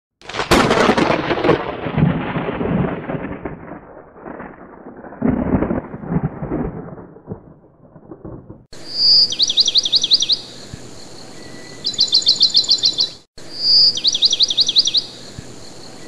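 A clap of thunder rolling away over several seconds. After an abrupt cut come three bursts of fast, evenly repeated chirps, like a bird's trill, over a steady hiss.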